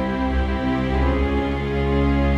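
Background music of long held chords, changing chord about a second in.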